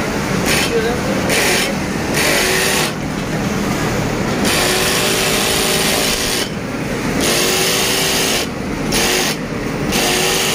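Workshop noise from industrial sewing machines: a steady machine hum under a hiss that starts and stops every second or two as machines run and halt, with voices in the background.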